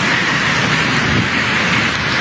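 Steady, loud rushing noise in a handheld phone recording, with no speech.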